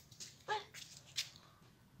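A single short high-pitched exclamation, 'ué', about half a second in, followed by a few faint clicks and rustles of a handheld phone rubbing against clothing.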